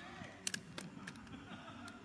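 Aluminium cot-frame poles being handled and fitted together, with a couple of sharp clicks under a second in, over a faint background.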